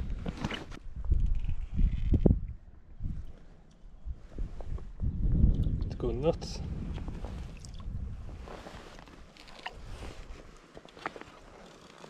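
Water sloshing and splashing around a wading angler's hand and legs in a shallow stream, in two spells of irregular low rumble. A short vocal sound comes about six seconds in.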